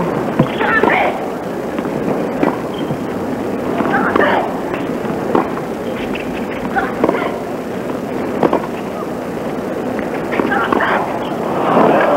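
A tennis rally on a hard court: racket strikes on the ball about every second and a half, with short player grunts on some shots, over a steady crowd murmur that swells near the end as the break point is decided.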